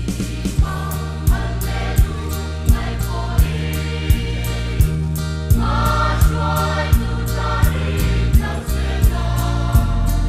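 Church choir of mixed voices singing in harmony, with instrumental accompaniment: sustained bass notes and a steady beat. The voices come in about a second in.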